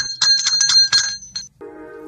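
A small high-pitched bell rung rapidly, about six or seven strikes a second, stopping about a second and a half in; a sustained musical chord starts just after.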